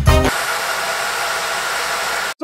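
A music track ends shortly after the start. It gives way to the steady rushing hiss of data-center server cooling fans, with a faint steady whine in it.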